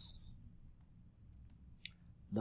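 A few faint, separate clicks of computer keyboard keys being typed.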